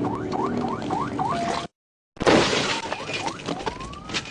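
Police car siren on yelp, fast rising sweeps about three a second, that cuts off suddenly; then a loud crash with shattering and scattering debris, as a vehicle collision. Near the end the siren starts to rise into a wail again.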